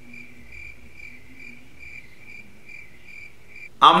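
Crickets chirping in an even, rapid pulse, about three chirps a second, used as a sound effect for an awkward silence. It cuts off abruptly just before speech resumes.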